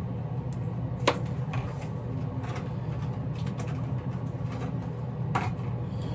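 A few small clicks and knocks of makeup items being handled on a counter, the sharpest about a second in and another near the end, over a steady low hum.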